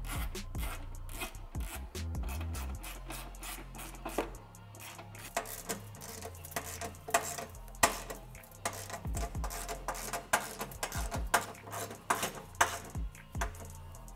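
Hand socket ratchet clicking in quick runs as bolts are tightened down, over background music.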